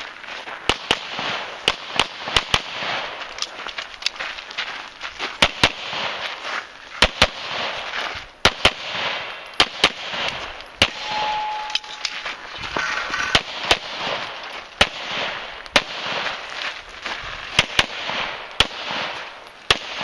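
Semi-automatic pistol fired repeatedly, mostly in quick pairs of shots a fraction of a second apart, with short pauses between the pairs.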